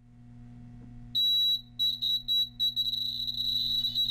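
Electronic beeper of a magnetic encoder demo sounding high-pitched beeps, each marking a virtual encoder line as the multipole magnet turns past the TMR sensor. The beeps start about a second in with one longer tone, then come faster and run almost together near the end, over a low steady hum.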